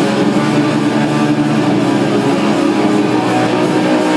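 Heavily distorted electric guitars of a live hardcore punk band holding sustained, droning chords, loud and overdriven in the audience recording.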